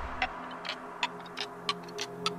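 Quiet breakdown in a progressive house mix: the bass drops out just as it begins, leaving sparse clicking percussion ticking about three times a second over faint sustained synth tones.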